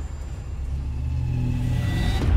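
Low rumbling drone, a trailer's sound-design bed, swelling louder through the second half.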